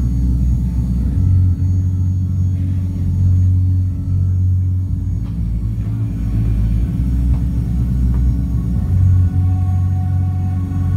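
Live band playing an instrumental passage with no vocals: deep sustained bass notes shifting pitch every second or so, with faint higher keyboard tones above.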